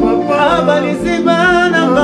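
A male voice sings a slow worship song, with long, wavering held notes, over electric guitar accompaniment.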